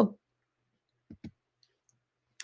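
Two short soft clicks in quick succession about a second in, with near silence around them.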